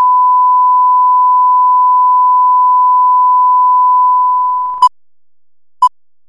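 Steady line-up test tone of the kind played with colour bars, a single pure pitch held until it fades out near the end. It is followed by two short countdown-leader beeps, one second apart.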